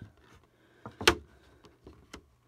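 Stiff clear plastic card packaging crackling and clicking as it is worked by hand, with a few short snaps, the sharpest about a second in.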